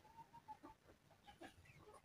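Near silence, with faint, scattered calls from farmyard poultry.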